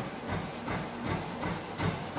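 Running footfalls striking a motorised treadmill belt, about three strikes a second, over the steady noise of the treadmill's motor and belt at a fast running pace.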